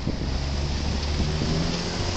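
A car engine running close by as an SUV pulls up alongside: a steady low hum, with wind rumbling on the microphone.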